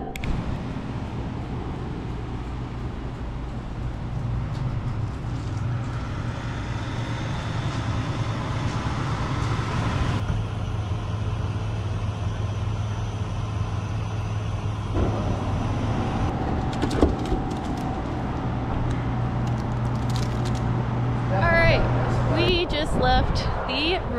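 Steady road traffic noise with a constant low engine hum under it; a voice comes in near the end.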